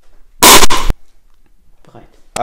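A person spitting once: a short, loud burst of breath from the mouth about half a second in.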